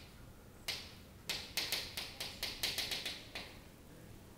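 Chalk tapping and scratching on a chalkboard as a word is written: a quick run of about a dozen short, sharp clicks, crowded together in the middle and stopping about three-quarters of the way through.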